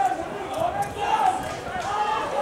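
Voices calling out on a football pitch, with a few thuds of the ball being kicked.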